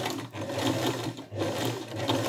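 Sewing machine running, stitching around the edge of an appliqué fabric piece. It briefly slows or pauses about a third of a second in and again just past the middle.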